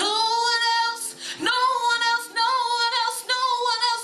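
A woman's solo gospel voice, amplified through a microphone, singing a few long high notes with vibrato between short breaths.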